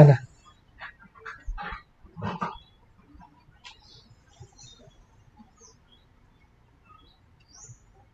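The tail of a man's word, then a few faint short sounds in the first couple of seconds, one like a distant murmured voice, then near silence for the rest.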